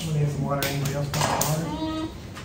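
People talking at a table, with one long held voiced sound, while a knife taps a few times against a wooden cutting board as grilled pork sausages (nem nướng) are sliced.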